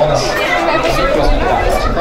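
Many people talking at once: the dense, steady chatter of a crowd, with no single voice standing out.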